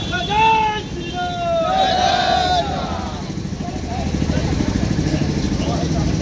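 A group of men shouting slogans together in rising and falling calls for about three seconds. Then an engine runs under street babble, louder from about four seconds in.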